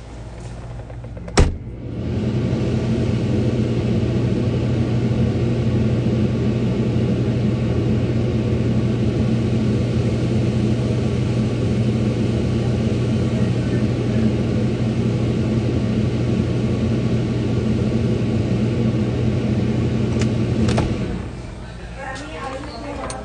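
A click, then a steady electric mains hum from an appliance, running for about nineteen seconds before it cuts off just after another click near the end.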